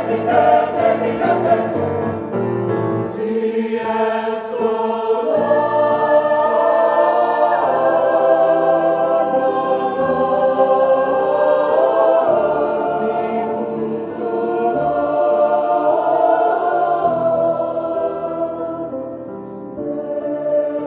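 Background choral music: a choir singing long held chords that shift every few seconds.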